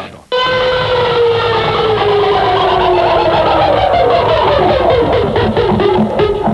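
Rock music with electric guitar starts about a third of a second in, after a short drop-out. Through most of it runs a long held note that slides slowly down in pitch.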